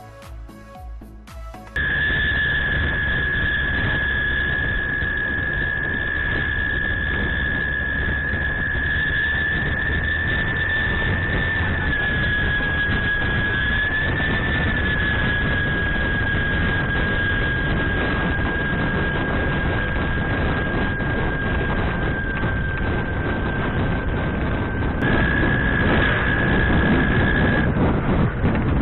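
Road and engine noise from a moving vehicle, picked up by a budget action camera's own microphone and sounding dull, with a loud steady high whine that wanders slightly in pitch. Music plays for the first couple of seconds, then cuts off suddenly.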